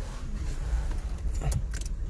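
A bunch of keys jingling with a few light clicks about one and a half seconds in, over a low steady rumble.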